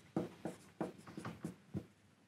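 Dry-erase marker writing on a whiteboard: a quick run of short strokes as symbols are drawn.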